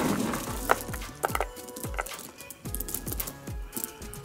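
A hand digging into and scooping up a box of pecan shell fuel pellets, which rustle and clatter with short sharp clicks. Background music with a beat plays underneath.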